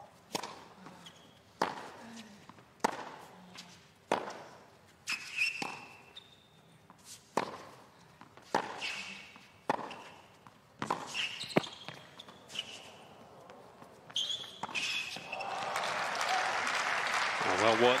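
A tennis rally on a hard court: about a dozen racquet strikes on the ball, roughly one a second. The rally ends about 15 seconds in and the crowd breaks into applause and cheering, which swells near the end.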